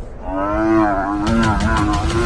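Cape buffalo bellowing in distress under attack by lions: one long, slightly wavering call that starts a moment in and holds to the end, over a low rumble.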